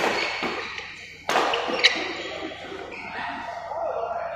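Badminton rackets hitting a shuttlecock during a rally: two sharp strikes about a second apart, echoing in a large sports hall, followed shortly by a brief high click.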